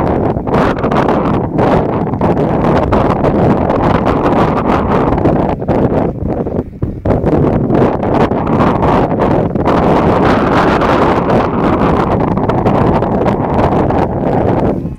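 Wind buffeting the camera's microphone: a loud, rough rumble that rises and falls in gusts, with a short lull about seven seconds in.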